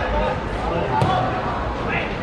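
A football kicked once, a single sharp thud about a second in as a corner kick is struck, over men's voices calling out on the pitch.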